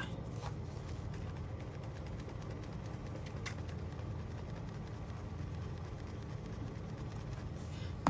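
Steady low room hum with a couple of faint clicks, about half a second and three and a half seconds in.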